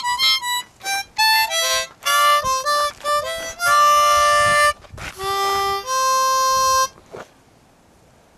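Harmonica played in a run of short, uneven notes and chords, a few held for about a second, stopping about seven seconds in.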